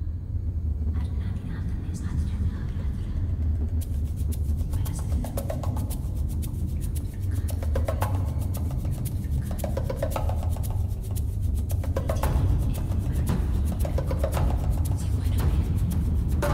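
Belly-dance drum-solo music: rapid hand-drum strokes over a steady deep low band, the drumming growing dense about four seconds in.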